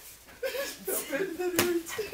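A single sharp smack about one and a half seconds in, typical of a hard-thrown ball hitting bare skin, among excited shouting and laughing voices.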